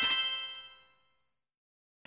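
Edited-in transition chime: a cluster of bell-like ringing tones dying away over about a second, then dead silence.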